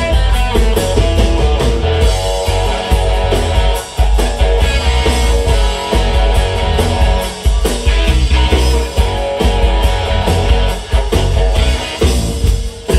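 Live rock band playing an instrumental passage: electric guitar leading over bass guitar and drum kit, with steady drum hits.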